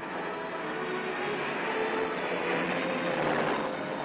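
Engine noise that swells to a peak about three seconds in and then falls away, under a background film score.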